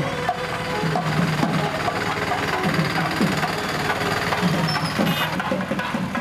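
Temple procession music with percussion, a dense and steady mix of beats and pitched sounds.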